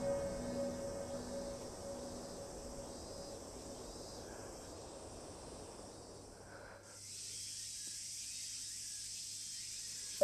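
Soundtrack music dies away, leaving quiet ambience. About seven seconds in, the sound cuts to a steady high hiss of insects, like crickets at night.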